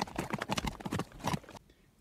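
Horse hoofbeats: a quick, even run of clip-clops, as of a horse moving round on a lunge line, stopping about one and a half seconds in.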